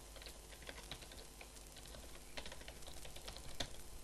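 Computer keyboard typing: an uneven run of quick key clicks as a web address is typed, with a few harder strokes near the end. A faint low hum runs underneath.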